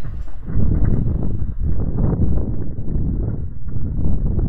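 Mountain bike rattling over a rough dirt trail at speed, with a run of irregular knocks from the wheels and frame over a heavy low rumble of wind on the microphone.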